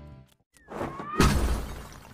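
A music tail fades out. After a brief gap, a rising swoosh leads into a loud crashing, shattering hit about a second in, which rings and fades away. It works as a comedic transition sound effect.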